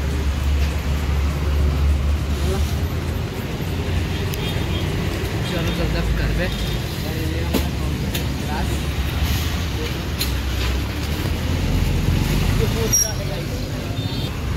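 Street traffic noise: a steady low rumble of passing vehicles with the faint voices of people nearby.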